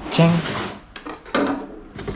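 Long cardboard box pushed across a wooden tabletop, a brief scraping rub, then a short knock about a second and a half in.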